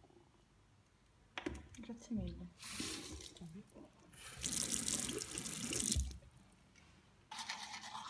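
Bathroom tap running into a sink as a toothbrush is wetted under the stream, in two short spells, the second lasting about two seconds.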